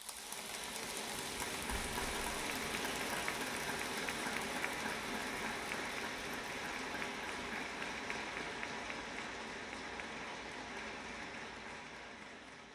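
Audience applauding: many hand claps merging into a dense, steady patter that eases off toward the end.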